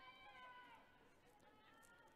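Near silence from the pitch, with faint, distant, high-pitched calls: one drawn out over the first part and a shorter one near the end.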